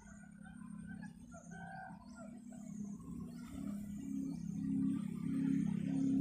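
A recorded quail call played through a loudspeaker as a lure: low notes that pulse about twice a second and grow steadily louder.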